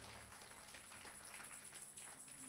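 Near silence: room tone with a faint steady high-pitched whine and low hum.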